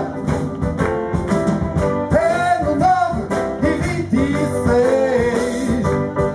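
Live jazz band playing, with a voice singing a melody that bends and holds notes over bass and drums.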